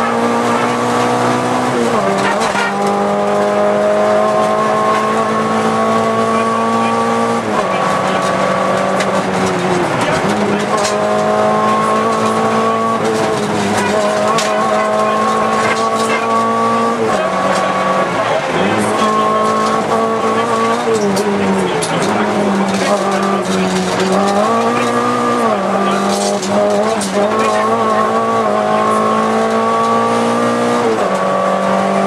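Volkswagen Golf II GTI 16V rally car's 16-valve four-cylinder engine heard from inside the cabin, driven hard at speed: the engine note climbs steadily in each gear, then drops back sharply at each gear change or lift, a dozen or so times.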